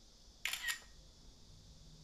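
A smartphone camera's shutter sound: one short two-part click about half a second in, as a photo is taken.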